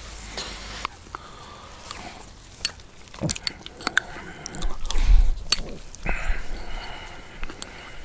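Close-miked eating of a root beer float with vanilla ice cream: a spoon clicks repeatedly against the glass as he scoops, followed by wet mouth and chewing sounds. A low thump about five seconds in is the loudest moment.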